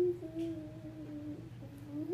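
A child humming a few long held notes with small steps in pitch, rising near the end.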